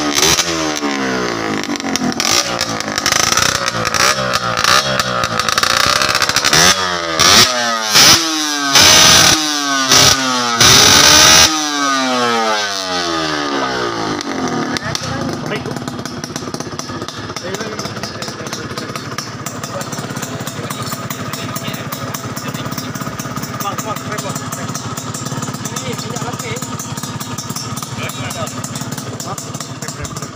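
Yamaha 125ZR single-cylinder two-stroke engine revved repeatedly through a custom exhaust pipe, the pitch rising and falling, with several hard blips about eight to eleven seconds in. It then settles to a steady, fast-pulsing idle.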